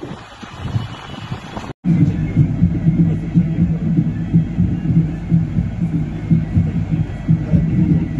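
Wind buffeting the microphone on an open bus top. After a brief cut-out about two seconds in, it gives way to the loud, steady, throbbing low drone of a coach's engine and road rumble heard inside the cabin.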